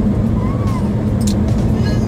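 Steady engine and road noise inside a moving car's cabin, a constant low hum.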